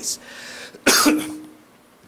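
A single sharp cough about a second in.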